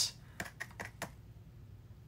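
A small plastic desk sign being handled: five or six light, quick clicks and taps within about half a second, starting about half a second in.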